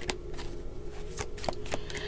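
A tarot deck being shuffled by hand: a run of quick, irregular card clicks and slaps, over a faint steady hum.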